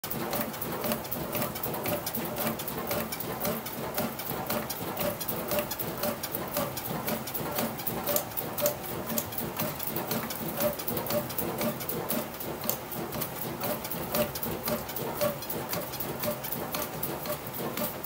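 Composite bat being rolled by hand between the rollers of a bat-rolling machine: a steady run of quick, irregular clicks and creaks, with a faint squeak repeating about two or three times a second.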